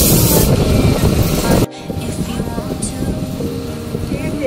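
Loud rushing noise of a boat under way, engine, spray and wind together, with a burst of spray hiss right at the start. It cuts off abruptly at an edit a little under two seconds in, leaving a pop song with singing over quieter boat noise.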